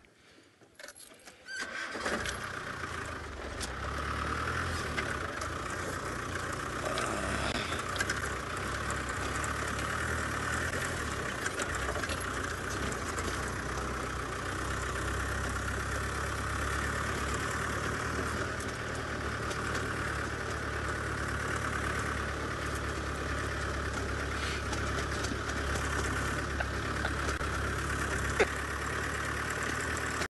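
Open safari vehicle's engine starting about two seconds in, then running steadily.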